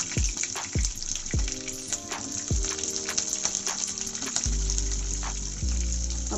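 Whole shallots sizzling in hot oil in a kadai, a steady hiss, under background music with a steady beat.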